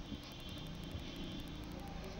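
Faint steady low hum and hiss of background noise in a pause between speakers.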